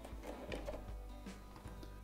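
Quiet background music, with a few faint ticks and taps of the grinder's plastic housing being handled and set down.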